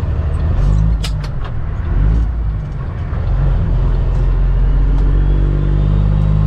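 Cummins ISX diesel engine of a 2008 Kenworth W900L heard from inside the cab as the truck pulls away. The revs rise and fall back a couple of times, then climb steadily near the end, with a few sharp clicks about a second in.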